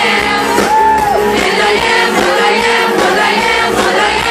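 Live pop/hip-hop band music played loud over a club PA: a sung melody over a dense backing track, with the crowd's voices joining in.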